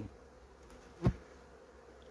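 Honeybees from an open hive giving a steady, faint hum. About a second in there is a single dull knock as a wooden frame is set back into the hive box.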